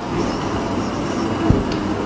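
Steady room noise from air conditioning, a constant hum and hiss, with a single short knock about one and a half seconds in.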